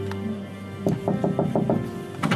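Held music notes fade out, then just under a second in a quick run of about six knocks comes at about five a second.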